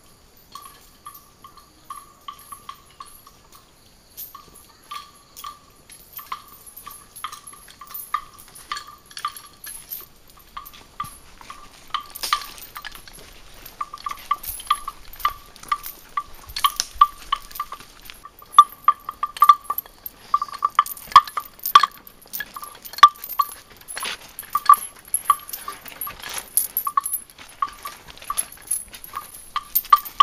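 A single-pitched bell hung on a walking animal, clanking irregularly with each step, faint at first and louder from about halfway through as the animal comes close.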